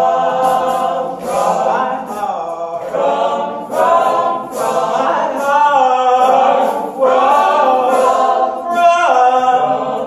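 Male a cappella group singing sustained chords in close harmony, with a soloist standing out in front of the group, the voices moving through short phrases a second or two long.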